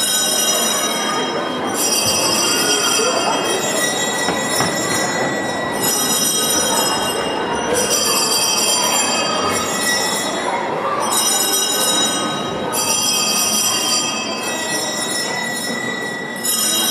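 Small handbells ringing, shaken in repeated bouts of a second or two each with short gaps between, over a steady rustling, scraping noise.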